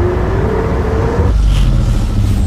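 Electric car's motor whine rising steadily in pitch over a rushing noise as it accelerates, then a deep rumble about a second and a half in.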